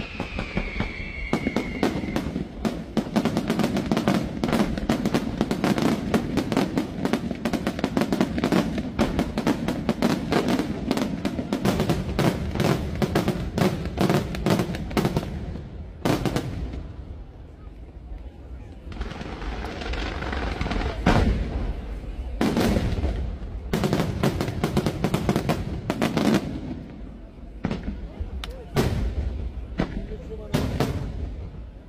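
Aerial fireworks barrage: shell bursts and crackling reports in rapid, dense volleys, many a second. A falling whistle sounds over the first two seconds. The volleys thin out for a few seconds a little past the middle, then build again.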